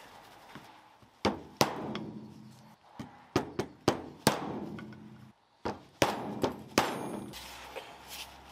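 Mallet blows on an old oil seal used as a driver, tapping a new oil seal home into an aluminium engine seal housing: about ten sharp, briefly ringing knocks at irregular intervals, several in a quick run near the middle.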